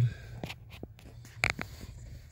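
Handling noise from a phone being moved under a car dashboard: faint scrapes and small clicks, with one sharper click about a second and a half in, over a low steady hum.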